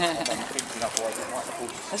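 Quiet voices talking, with a few light scrapes and clicks as a gloved hand digs mud out of a small rusty metal box.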